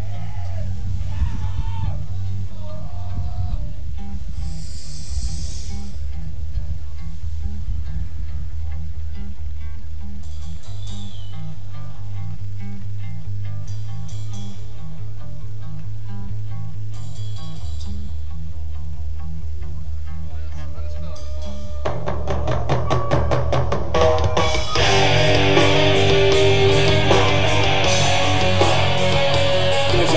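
A death metal band playing live: a slow, low droning intro with a few shouts from the crowd. About 22 seconds in, the full band crashes in with distorted electric guitars and drums.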